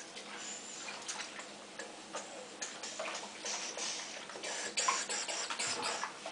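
Faint, irregular small splashes and crackles of bath water and foam as a child shifts about in a bubble bath.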